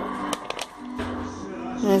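Soft background music with sustained notes. About half a second in come a few light clicks as the paper pages of a lesson booklet are turned.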